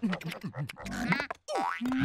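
Cartoon comic sound effects mixed with wordless, squeaky character voices. They make a quick run of short springy pitch slides, some rising and some falling, broken by a brief silence about three-quarters of a second before the end.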